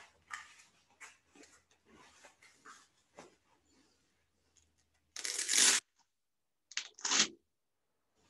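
Sparring gloves being pulled on: soft rustling of the padded gloves, then a loud rasping rip of a velcro wrist strap about five seconds in, followed by two shorter rips.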